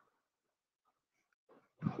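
Near silence in a pause between spoken sentences, with a man's voice starting again just before the end.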